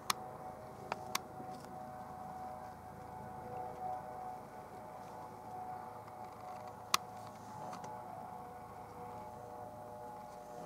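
A distant Eurocopter EC135 helicopter in flight, heard as a steady whine of several tones that drift slightly in pitch over a low hum. A few sharp clicks come near the start and again about seven seconds in.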